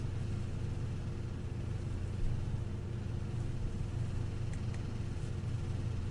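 Steady low electrical or room hum with a faint constant tone above it, the background of a voice recording. A few faint clicks come about four and a half to five seconds in.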